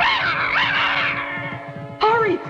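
A cat's harsh, raspy snarl, loudest in the first second and then fading, over steady background music.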